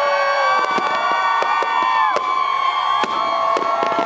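Fireworks bursting overhead in a string of sharp bangs and crackles, with a crowd cheering and shouting throughout.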